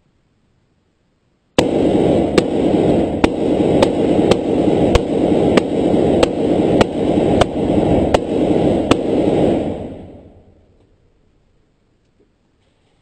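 Gunshots striking a car's bullet-resistant windshield, heard from inside the cabin: about a dozen sharp cracks, roughly one every half second to second, over a continuous loud din. It starts abruptly and fades out a couple of seconds before the end. The glass cracks at each hit but stops the rounds.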